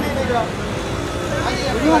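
Several people's voices talking briefly, over a steady low rumble of street traffic.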